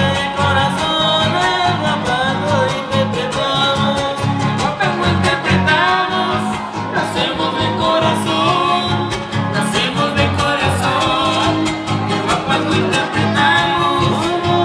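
Huapango huasteco (son huasteco) music: violin over fast strummed guitars, with singing, playing without a break.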